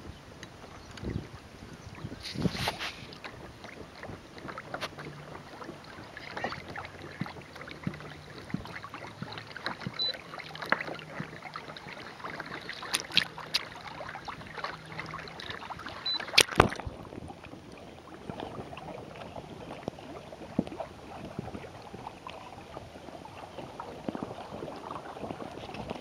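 Water lapping and splashing along the hull of a Hobie kayak under way, with scattered light knocks and one sharp click about two-thirds of the way in.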